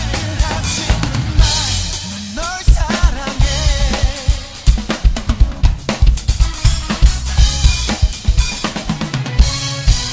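Acoustic drum kit played along with the song's backing track: steady kick and snare strokes with crashing cymbals, over backing music carrying a sliding melodic line.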